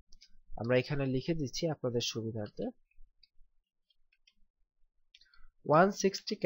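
Speech for the first half and again at the very end. In the pause between, a few faint scattered computer keyboard clicks as text is typed.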